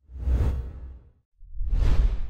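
Two whoosh transition sound effects, each a swelling rush of noise with a deep low end: the first fades about a second in, the second rises near the end.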